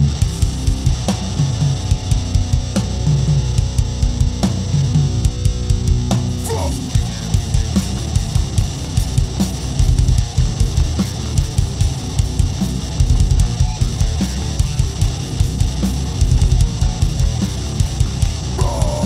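Live metalcore band playing: distorted electric guitar and bass over fast drumming on a drum kit, loud and dense throughout.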